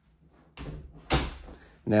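A closet door swung shut by hand, closing with one sharp bang about a second in.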